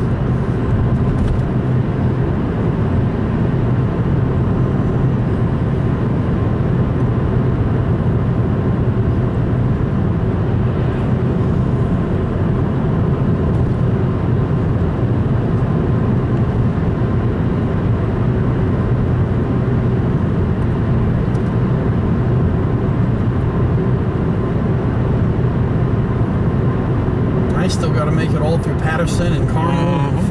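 Steady drone of a car driving at speed, heard from inside the cabin: engine and tyre noise with a low hum, holding an even level throughout.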